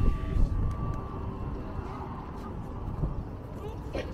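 Wind rumbling on the microphone, an uneven low buffeting, with faint voices in the background.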